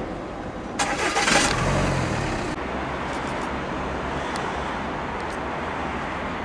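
A car engine, the white Audi A5 Sportback's, is started. About a second in there is a short loud burst as it cranks and catches, with a brief rise in engine note. It then settles into a steady low idle.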